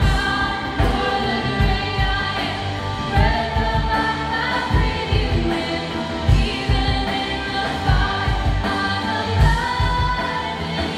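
Live contemporary worship music: women singing a slow melody over acoustic guitar and a drum kit, with a steady kick-drum beat about every 0.8 seconds.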